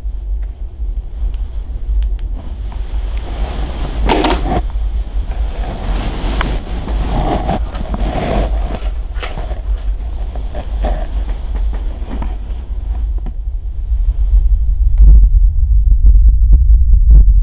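A deep, steady low rumble, getting louder near the end, with scattered rustling of cloth and a few knocks as the camera is jostled against a shirt.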